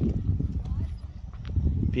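Footsteps of someone walking on a paved promenade, as irregular low thumps over a steady low rumble.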